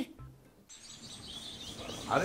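A short, low music note ends just after the start. After a brief gap, faint outdoor background noise comes in, with small birds chirping.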